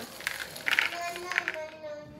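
A cup of milk and white chocolate chips poured from a small bowl onto cereal in a plastic mixing bowl, a loose pattering rattle that comes in two spells.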